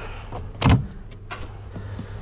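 Compact front-loading washing machine door being pulled open, its latch releasing with one sharp clack about two-thirds of a second in and a fainter knock a little later.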